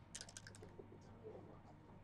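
Backgammon dice rattled in a dice cup and thrown onto the board: a quick cluster of sharp clicks in the first half-second.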